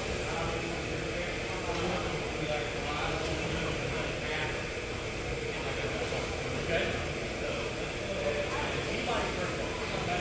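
Indistinct voices over a steady background noise, with no single loud impact standing out.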